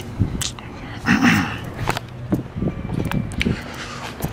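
A man clearing his throat once, about a second in, amid scattered light clicks and knocks of a handheld camera being moved about.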